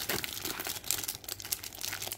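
Clear plastic packaging crinkling in irregular small crackles as it is handled and pulled at to open it.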